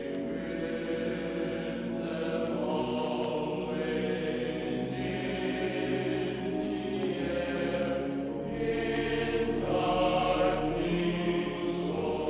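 Background music: a choir singing long held notes that slowly shift and swell, growing a little louder near the end.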